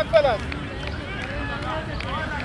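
Indistinct voices of cricketers calling out on the field, loudest in a short burst just at the start, over a steady low background noise.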